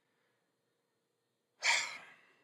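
Near silence, then, about one and a half seconds in, a man's short breathy sigh that fades out.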